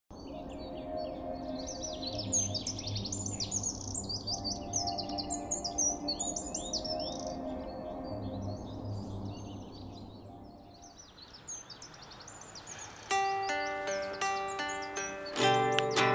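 Many birds chirping for the first ten seconds or so over low held tones, then fading out. From about 13 seconds in, a classical guitar plucks single notes one after another, and a strummed chord comes near the end.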